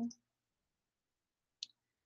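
Near silence broken by a single short computer mouse click about one and a half seconds in.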